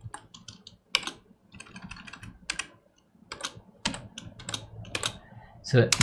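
Computer keyboard being typed on: irregular runs of keystroke clicks with short gaps between them.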